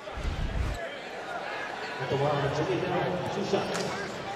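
A brief low rumble at the start, then a man's voice, low and drawn out, from about halfway through.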